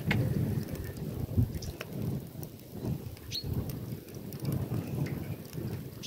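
Wood fire burning in a rusty metal drum as the wood chars for charcoal: a fluctuating low rumble with scattered crackles and pops.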